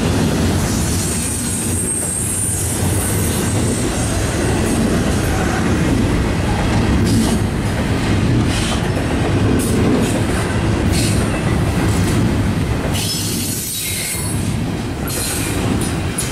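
Double-stack container freight cars rolling past close by: a steady, loud rumble of steel wheels on rail, with clickety-clack over the joints and wheel squeal at times.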